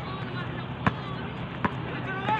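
A basketball bouncing twice on a hard outdoor court, two sharp slaps less than a second apart, over faint distant voices of players.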